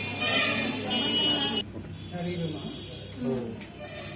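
Indistinct voices of people talking, with a steady high-pitched tone over the first second and a half that cuts off suddenly.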